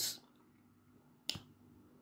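One short, sharp click about a second and a quarter in, against near silence; the tail of a spoken word fades at the very start.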